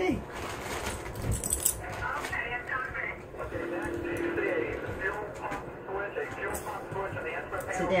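A television's speech running in the background while rat terrier puppies play and scuffle together.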